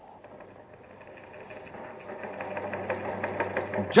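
Radio sound effect of a teletype machine clattering in a rapid, even run of clicks, fading in and growing louder.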